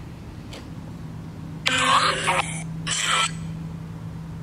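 Necrophonic ghost-box app playing through a phone speaker: a steady low hum, with two short bursts of chopped, voice-like sound fragments about two and three seconds in.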